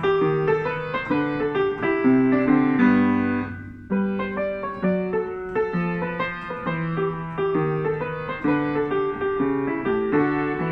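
Upright piano playing a jazz étude: a chromatic bass line in the left hand under syncopated right-hand chords that land ahead of the beat. About three and a half seconds in, a chord is left to ring and die away before the playing picks up again.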